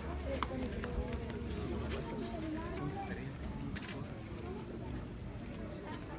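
Indistinct voices of several people talking in the background, none clearly, over a steady low rumble.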